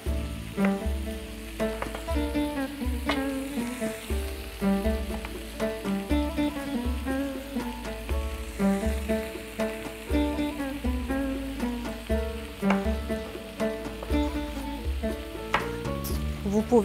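Background music with a steady bass beat over food sizzling as it fries in a wok.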